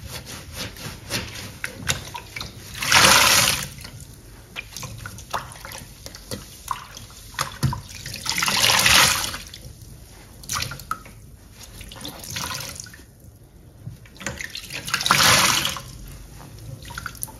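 Large yellow sponges soaked in soapy water being squeezed out three times, each time a gush of water pouring and splashing into a stainless-steel sink, with squelches and drips between.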